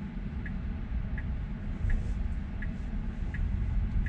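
Car turn-signal indicator ticking evenly, about one tick every 0.7 seconds, over a steady low rumble inside the cabin of a car stopped at a turn.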